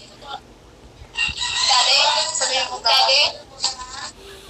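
A rooster crowing loudly and close by, one long call starting about a second in with a short tail near the end.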